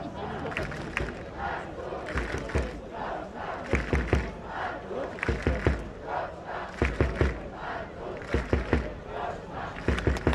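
Speedway crowd chanting and shouting together, with groups of three or four loud beats about every second and a half, from about four seconds in.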